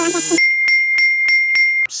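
A man's voice briefly drawn out at the start, then a steady high electronic tone with a click about three times a second, cutting off suddenly near the end: a sound effect for switching the goggles on.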